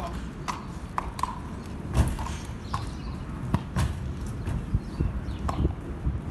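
A horse's hooves stepping onto a horse trailer's loading ramp: a series of irregular knocks and thuds, the loudest about two seconds in.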